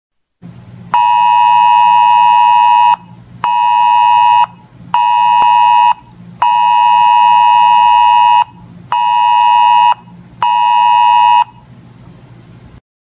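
Weather radio alert tone: a loud, steady beep near 1 kHz sounded in a long-short-short pattern that repeats twice (one two-second beep, then two one-second beeps), signalling an incoming National Weather Service alert. A faint low hum runs underneath.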